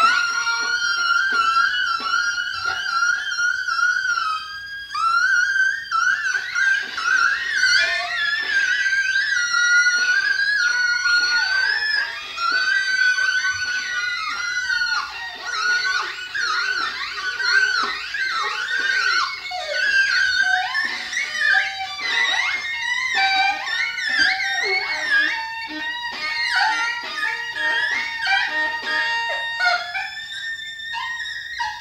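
Improvised duet of alto saxophone and viola: a held high note at first, then sliding, rapidly shifting lines and quick flurries of notes.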